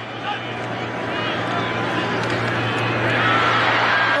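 Football stadium crowd noise swelling steadily louder as a play develops, with faint voices mixed in under a steady low hum.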